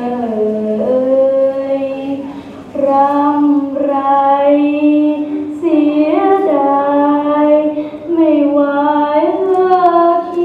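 A girl singing slowly and unaccompanied, in long held notes that step up and down in pitch, with brief pauses between phrases.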